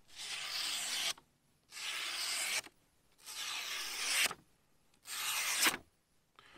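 Four slow cutting strokes of a small folding knife's 9Cr13 steel blade, each a rasping hiss about a second long with short gaps between, testing the factory edge, which proves razor sharp.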